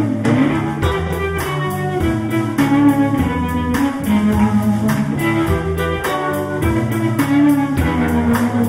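Blues band playing an instrumental passage: electric guitars over bass and a drum kit, with a steady beat of about four cymbal strokes a second.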